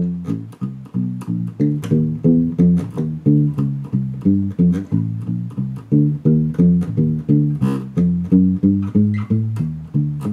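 Six-string Warwick Streamer LX electric bass playing a walking blues line, about three notes a second. It is thumb-muted, with a fret wrap damping the strings, so each note is short and dull to imitate an upright bass.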